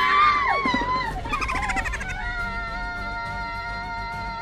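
A woman's high-pitched scream, breaking off before a second in, followed by background music with long held notes.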